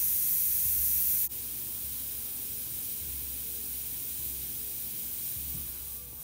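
Airbrush spraying paint in a steady high hiss that drops off sharply about a second in, leaving a fainter hiss.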